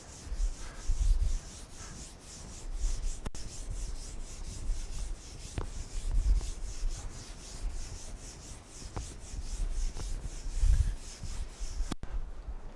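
Chalkboard being wiped clean with a hand-held eraser: quick, repeated rubbing strokes across the board, with dull low thumps now and then.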